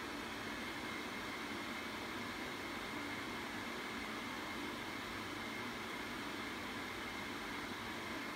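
Steady, even background hiss with a faint high whine running through it, like a fan or other machine running in the room.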